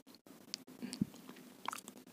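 Faint, scattered small clicks and mouth noises close to the microphone in a pause between sentences of speech.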